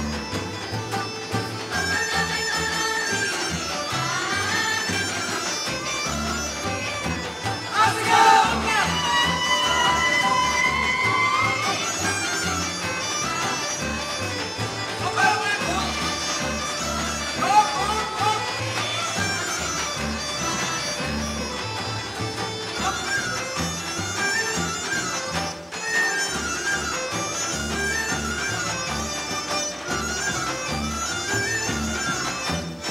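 Bulgarian folk dance music: a reedy, bagpipe-like melody over a steady low drum beat. A brief high gliding sound rises above it about eight seconds in.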